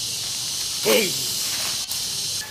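Steady high-pitched hiss of insects in the trees. A short falling vocal sound comes about a second in, and a sharp click comes near the end.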